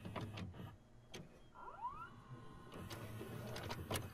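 Videocassette recorder mechanism engaging play: a series of clicks and clunks, with a short motor whine rising in pitch about a second and a half in.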